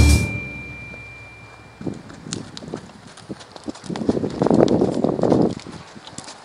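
A horse walking up close on a dirt arena: irregular soft hoof thuds, busiest a little past the middle.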